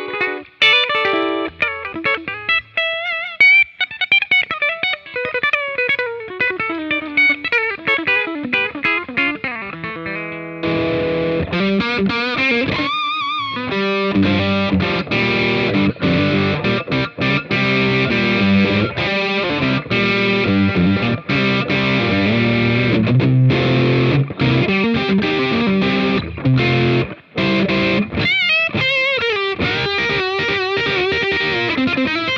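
Gibson Custom Shop 1959 ES-335 semi-hollow electric guitar played through an amplifier: a single-note lead line with string bends and vibrato, turning about ten seconds in to fuller, denser chordal playing, and back to a bent single-note phrase near the end.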